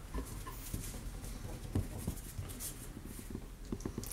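Boston terrier puppies playing with plush toys on carpet: irregular scuffling and soft knocks, the loudest about two seconds in, with a couple of faint little puppy noises near the start.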